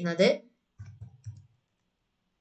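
Three quick clicks from a computer mouse or keyboard, about a second in, each with a dull low knock under it, as a font is picked in an editing program.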